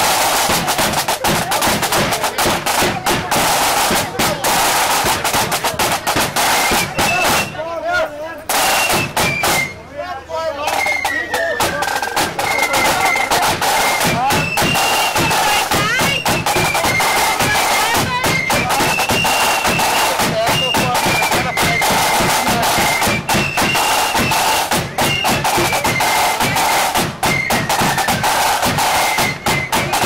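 Marching band playing: rapid snare drumming throughout with a high, slowly rising and falling melody line above it, the drumming thinning briefly twice near the middle.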